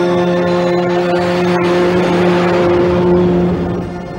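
Soundtrack drone: one held low tone with many overtones, joined by a swelling rush of noise in the middle, that dies away about three and a half seconds in.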